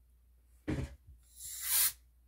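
Two blasts of canned compressed air: a short puff a little under a second in, then a longer, louder hiss near the end. The air is blowing wet alcohol ink across the resin surface to spread it into petals.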